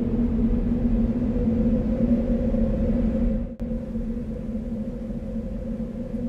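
A low, steady drone of held tones over a deep rumble, like an ambient soundtrack pad. It drops out for an instant about three and a half seconds in, then carries on a little quieter.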